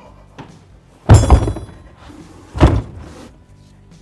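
A flat tire on its alloy wheel dropped into an SUV's cargo area. A heavy thud about a second in, with a brief high ringing, then a second thud about a second and a half later.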